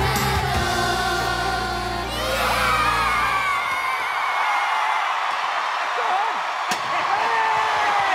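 Backing music with group singing ends about three and a half seconds in, and a studio audience cheering and screaming with high whoops takes over. A single sharp crack comes near the end.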